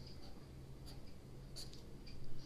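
A pen scratching faintly across notebook paper in a few short strokes, drawing the sides of a pentagon.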